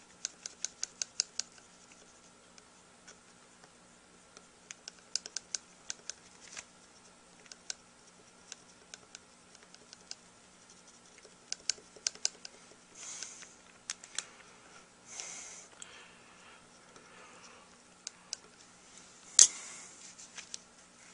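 Small stainless steel tool clicking and tapping against a hard rubber tenor sax mouthpiece as it smooths epoxy putty in the baffle. The ticks are quick and light and come in irregular runs, with one sharper click near the end. Two brief hisses come in the middle.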